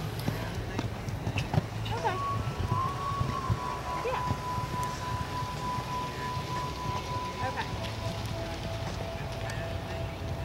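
A show-jumping horse cantering on a sand arena, its hoofbeats faint under background voices. A steady high tone holds for several seconds from about two seconds in and continues at a lower pitch near the end.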